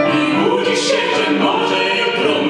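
Live duet: a man and a woman singing a retro Polish song with piano accompaniment.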